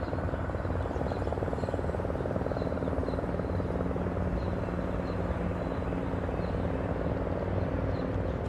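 Steady drone of a helicopter's rotor and engine, with a fine rapid beat to it, and faint short high chirps above it.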